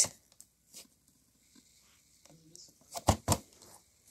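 Handling noise from a plastic blister-packed toy truck being lifted out of a cardboard box, with a few sharp clicks and knocks about three seconds in.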